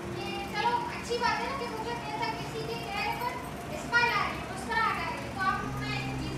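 A group of children talking and calling out over one another, several voices at once.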